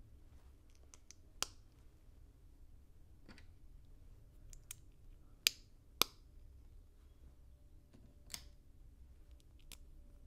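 Plastic LEGO pieces clicking as they are handled and pressed together: about seven sharp, scattered clicks, the loudest two half a second apart just after the middle.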